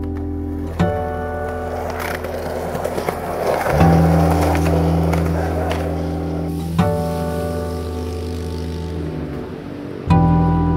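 Skateboard wheels rolling on asphalt: a gritty rumble with a few clacks, strongest about two to four seconds in. Under it runs background music of sustained chords that change about every three seconds.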